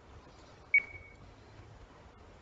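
A single short, high electronic beep from the computer that fades out quickly, over a faint steady background hum.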